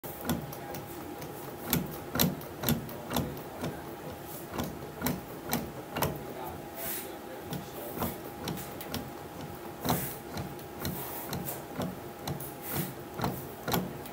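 Baseball bat being worked by hand through a bat rolling machine's rollers: a run of sharp clicks and knocks, about two a second, over a faint steady hum.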